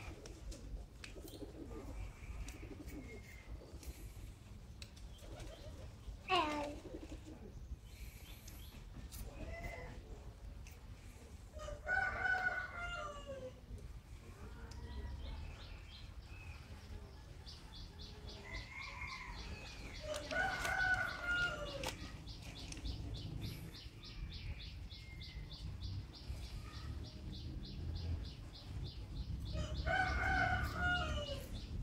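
Domestic roosters crowing several times, each call lasting about a second and a half, with quieter chicken calls between them. From about halfway through, a fast, high-pitched pulsing runs steadily in the background.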